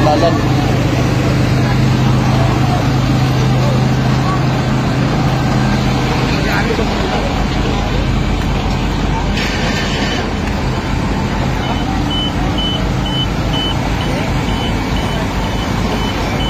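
A truck engine running with a steady low hum amid street noise. In the last quarter a vehicle's reversing alarm starts, beeping about twice a second.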